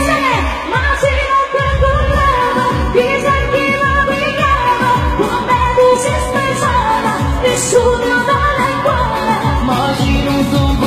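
Live band playing a Neapolitan neomelodic pop song with singing over a steady kick-drum beat, about two beats a second. The low end drops out briefly just after the start and comes back about a second and a half in.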